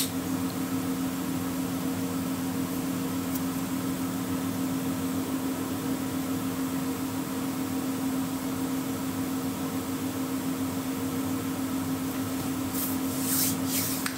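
Steady low mechanical hum in a small room, like a fan or air conditioner running, with a few faint clicks near the end.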